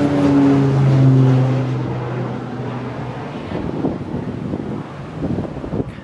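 A low-flying firefighting floatplane passes overhead, its propeller engine drone dropping in pitch as it goes by. The drone then fades over the next few seconds into wind noise on the microphone.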